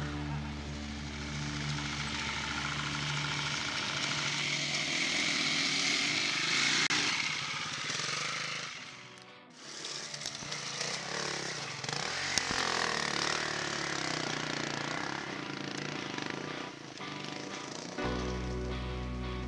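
Dirt-bike engines revving and running hard as the bikes ride and climb a dirt trail, with a brief drop-out about halfway through.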